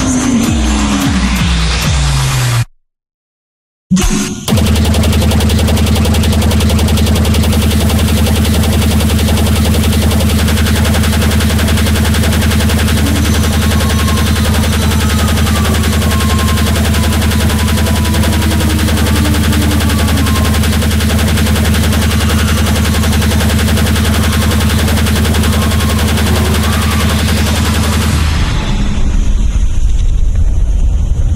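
Extratone speedcore electronic music. A pitched sweep falls steadily, then cuts off suddenly into about a second of silence. A harsh, dense wall of extremely fast kicks then comes in, packed into a steady low buzz, and changes sound near the end.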